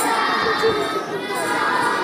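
A group of young children singing together, many small voices overlapping in a kindergarten choir.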